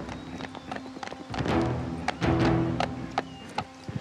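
A horse's hoofbeats clattering on hard paved ground as it trots, then breaks into a gallop toward and past the listener, with the loudest strikes near the end. Film background music plays under the hoofbeats.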